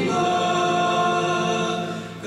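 Voices singing a Romanian Christian worship song, holding one long note that fades out near the end.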